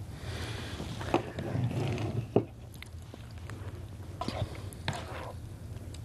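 A spatula scraping and knocking against a nonstick electric skillet as cooked chicken is scooped out onto a serving plate, with a few sharp clicks, loudest about a second and two seconds in, over a steady low hum.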